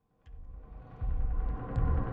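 Low rumbling ambient drone of a film soundtrack fading in about a quarter second in, with faint steady tones above it, and growing louder about a second in.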